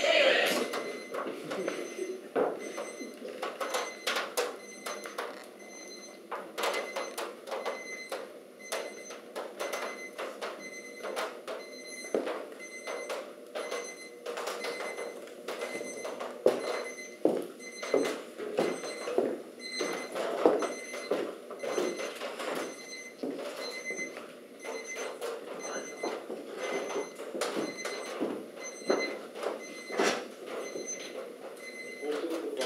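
Soft, indistinct voices with scattered footsteps, knocks and clinks in a room, over a faint high electronic beeping that repeats evenly throughout.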